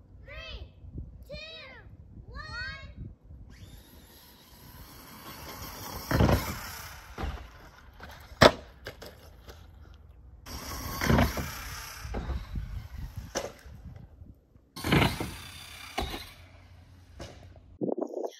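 Traxxas Stampede 4x4 VXL RC monster truck running across grass, its brushless electric drive whining as it speeds up. Several sharp knocks and bangs come as it hits the ramp and strikes the shed roof; the loudest crack is about halfway through.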